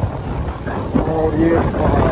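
Wind buffeting the microphone of a moving Royal Enfield Bullet motorcycle, with a low rumble underneath; from about a second in, a man's voice talks over it.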